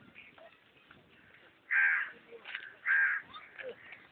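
A crow cawing twice, two short harsh calls about a second apart.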